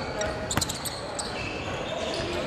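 A basketball dribbled on a hardwood gym floor: a few sharp bounces in the first second or so. Background voices are heard in the gym.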